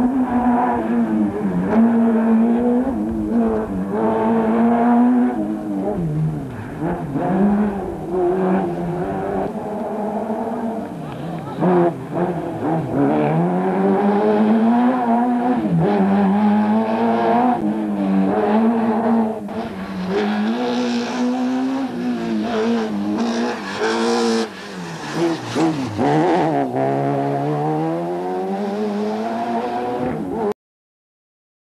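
Rally car engine running hard, its pitch repeatedly rising as it revs up and dropping sharply at each gear change or lift.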